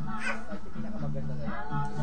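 A small child's high-pitched vocalising, twice rising in pitch, over background music with a steady bass line.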